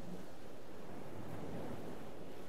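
Ocean surf washing over a rocky shore, a steady, even rush of waves.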